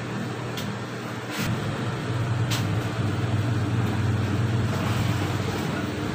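Industrial sewing machine's motor humming steadily, growing louder about a second and a half in, with a few light clicks.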